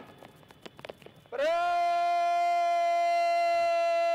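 A parade commander's shouted word of command, drawn out on one steady pitch for about three seconds, starting a little over a second in.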